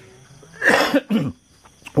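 A man coughs twice into his hand, a longer cough about halfway through and a shorter one just after.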